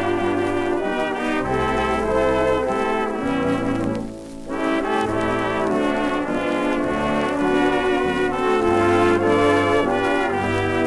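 Dance orchestra playing an instrumental passage of a waltz, led by its brass, heard from an old 78 rpm shellac record. There is a brief drop in the music about four seconds in.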